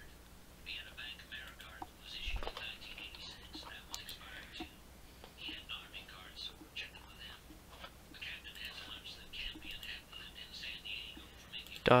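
A person whispering or muttering faintly under the breath, in short broken stretches.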